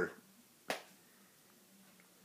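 A single short, sharp click a little under a second in, then quiet with a faint steady hum.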